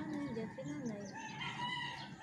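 Rooster crowing: one long, drawn-out call starting a little past a second in.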